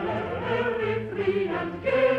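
Mixed choir singing a Baroque chorus with orchestral accompaniment: several voice parts move in held and changing notes over a steady bass line.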